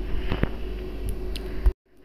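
Metal spatula stirring and scraping wet spice paste and water in a steel kadai, with a few sharp clinks against the pan. The loudest knock comes just before the sound cuts off abruptly near the end.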